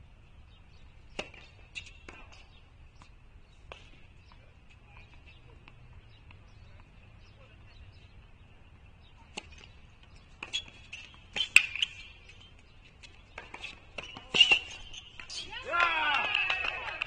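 Tennis ball strikes on an outdoor hard court: a few sharp, sparse knocks in the first seconds, then a louder run of racket-on-ball hits and bounces in the last third. A faint, steady high-pitched tone lies underneath.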